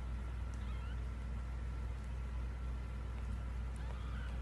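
A very young kitten giving faint, high-pitched mews, once about half a second in and again near the end, over a steady low hum.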